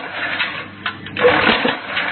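Hydraulic hole-punching machine running through its punching cycle: a loud noisy working burst with sharp clicks, then a quieter dip, repeating about every second and a half to two seconds.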